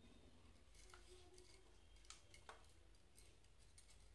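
Near silence, broken by a few faint clicks and ticks of thin wire leads being handled and twisted together.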